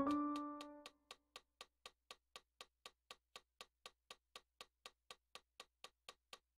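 A piano chord rings and dies away over the first second, then a metronome ticks steadily at about four ticks a second.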